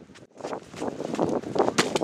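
Scuffling and thuds in loose sand as a person throws himself down and slides beside a chest, sand spraying, with a sharp impact near the end.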